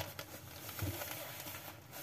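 Faint handling sounds of a heated glove's plastic battery box being opened: light clicks and rubbing.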